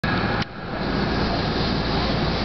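Steady running noise inside the cab of a Kintetsu commuter train standing at a platform. A brief sound with a high steady tone cuts off sharply about half a second in, and the steady noise then comes back.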